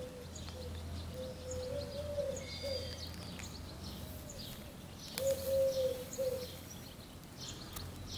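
Birds calling outdoors: a dove cooing in low, wavering phrases and small birds chirping high. A plastic zip-lock bag crinkles in the hands about five seconds in.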